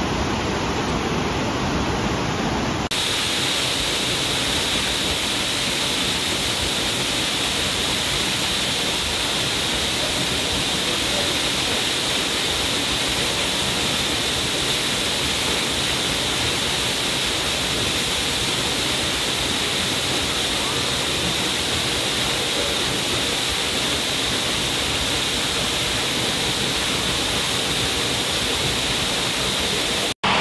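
Waterfall: a steady, even rush of falling water that changes abruptly about three seconds in to a brighter, hissier rush.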